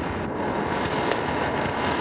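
Steady hiss of a home cassette tape recording, with a faint steady tone running through it.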